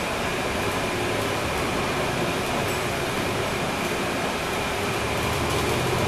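Inside a NABI 416.15 transit bus, heard from near the rear: its Cummins ISL9 diesel engine and driveline running steadily as the bus moves along, a low drone under road and cabin noise.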